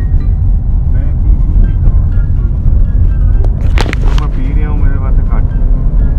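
Steady low rumble of a car's road and engine noise heard inside the cabin while driving, with music and faint voices under it and a brief rustle about four seconds in.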